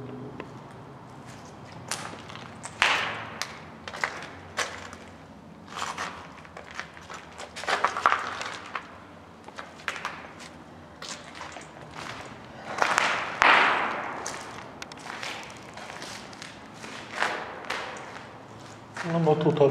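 Footsteps at an irregular walking pace, with louder scuffing noises about three, eight and thirteen seconds in.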